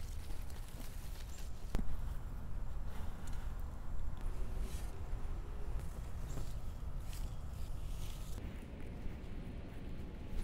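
Soil and mulch being worked by hand and shovel around a newly planted tree: scattered scraping and rustling, with one sharp click about two seconds in.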